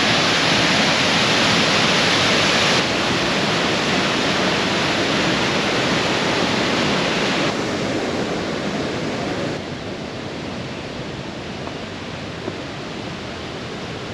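Sol Duc Falls' rushing water, a steady, dense noise of falling water that drops in loudness in steps, about three seconds in, near the middle and again after ten seconds, sounding farther off in the later part.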